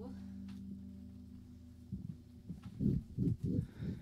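A steady low hum, with faint ringing from the electric guitar through its amplifier, then a woman's voice speaking into the microphone from about two seconds in.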